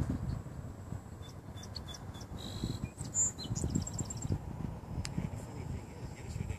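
Wind rumbling and gusting on the microphone, with a small bird's short, high chirps and a quick run of about five high notes around the middle.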